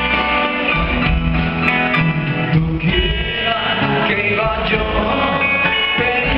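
Live rock and roll band playing a song: electric guitar and drums, with a man singing.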